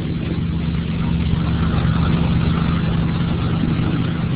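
A steady low hum with hiss over it, an unbroken background noise in the recording.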